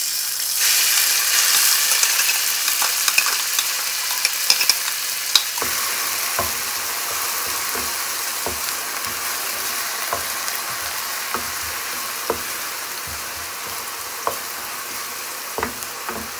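Finely chopped onion sizzling as it goes into hot oil in a stainless steel pan. The sizzle jumps up about half a second in and slowly eases off. From about six seconds in, a wooden spoon stirs it, knocking against the pan about once a second.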